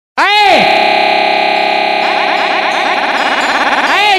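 Electronic synthesizer intro sting: a loud buzzy chord that swoops up and back down as it starts, then holds, with a fast fluttering rising sweep building under it over the last two seconds.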